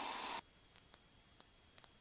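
Headset intercom hiss that cuts off suddenly about half a second in, leaving near silence with a few faint ticks. No engine noise is heard.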